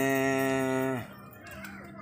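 A man's voice holding one long, even vowel for about a second, a drawn-out pause sound in mid-sentence, then dropping to a quieter stretch with only a faint low hum.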